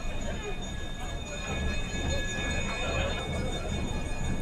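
Background sound at the festival venue: faint, indistinct voices over a low rumble that swells and fades, with a thin steady high whine.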